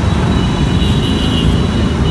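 Loud, steady low rumble of outdoor background noise, with two faint high steady tones above it.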